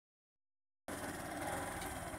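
Steady vehicle engine rumble mixed with wind noise, starting abruptly just under a second in.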